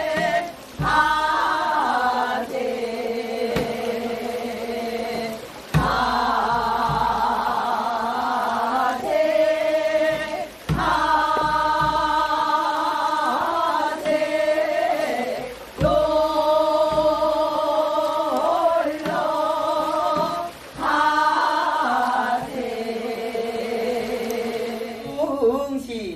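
Korean Gyeonggi folk song (minyo) sung in long phrases with wavering vibrato, broken by short breaths. Janggu hourglass drum strokes mark the start of the phrases about every five seconds.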